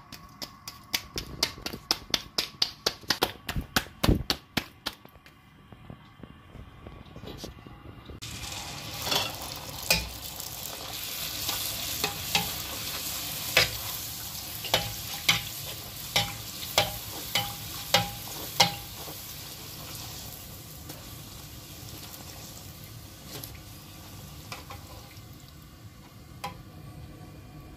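Puri deep-frying in hot oil in a steel karahi: a steady sizzle, with sharp clinks of a metal slotted spoon against the pan. Before the frying, a quick run of taps, about three a second, for the first few seconds.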